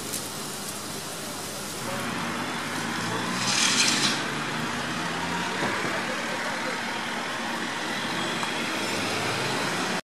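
Street traffic noise: a steady rumble of road vehicles, with a brief hiss about three and a half seconds in.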